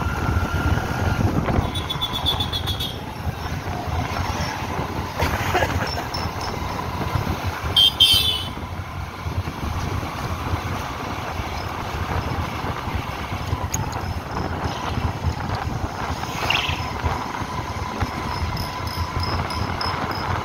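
Motorcycle running along a city street, a steady low engine and road rumble with rushing air. Short high-pitched chirps come about two seconds in and again about eight seconds in, the second the loudest moment.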